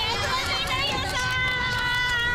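Speech: a high voice calls out "itadakimashita", holding the last note steady for over a second.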